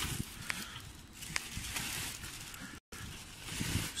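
Clear plastic wrapping rustling and crinkling as it is pulled off the top of a telescope tube, with a few sharp crackles.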